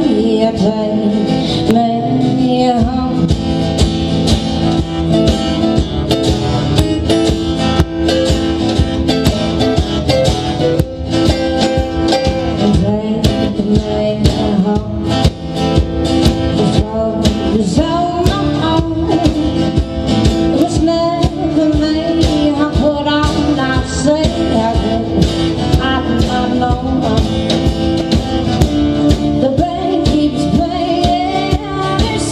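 Live band song: three acoustic guitars strummed over a steady drum beat, with singing at times.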